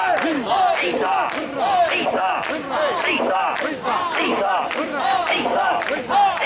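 A large group of mikoshi bearers shouting a rhythmic carrying chant in unison, about two shouts a second, keeping step as they shoulder the portable shrine.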